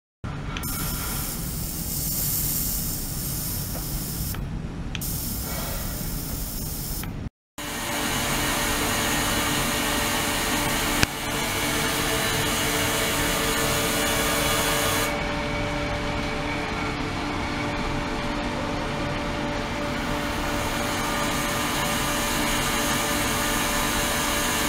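Ultrasonic tank running: a steady hiss of churning, agitated water with a low hum underneath. The sound cuts out for an instant about seven seconds in, and there is a single click near the middle.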